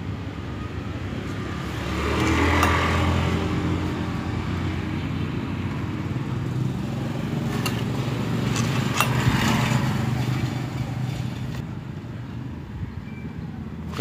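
A motorcycle engine running nearby, swelling louder about two seconds in and again around nine seconds, with a few light metal clicks as a screwdriver is set against the wheel bearing in the hub.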